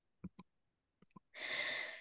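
A few faint short clicks in the first second, then an audible in-breath over the last half second before speech resumes.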